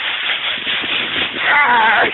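Dry fallen leaves crackling and rustling as a puppy digs and pounces through a leaf pile close to the microphone. Near the end a brief high-pitched vocal cry cuts in.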